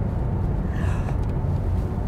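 Steady low road and wind rumble inside the cabin of a Porsche Taycan Turbo S electric car at motorway speed, with a short breathy gasp about a second in.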